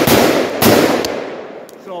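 Two shots from an AR-15 pistol with a 7.5-inch barrel and a linear compensator, 5.56: one at the start and one about half a second later. Each shot echoes and fades over about a second.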